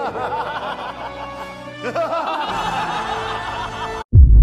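A man laughing theatrically, a long string of 'ha' bursts rising and falling in pitch, over background music. A second bout of laughter starts about two seconds in, and the sound cuts off abruptly at the end.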